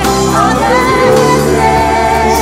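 A live worship band playing a slow praise song: singing over electric and acoustic guitars and sustained low bass notes.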